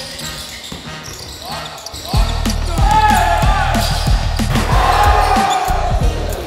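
Basketball court sounds of a live scrimmage: ball bouncing and sneakers squeaking on the hardwood floor in a gym. About two seconds in, a heavy bass music beat comes in over them and becomes the loudest sound.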